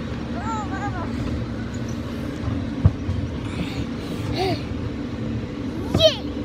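Safari-jeep ride vehicle running along its ride track: a steady low rumble with a faint hum, and a single sharp knock just under three seconds in.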